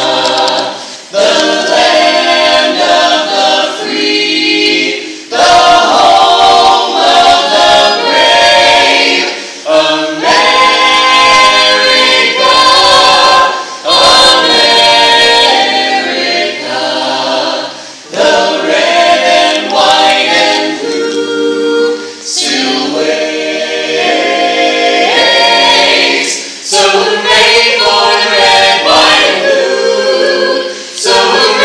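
An a cappella vocal ensemble of men and women singing in harmony, phrase after phrase with short breaths between.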